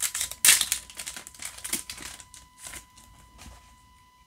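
Rustling and crinkling of a foil trading-card booster pack and the cards inside being handled, loudest in a burst about half a second in and dying away after about three seconds.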